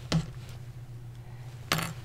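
Two short clicks about a second and a half apart, handling noise as fingers with long nails work a felt ornament and its twine over a craft mat.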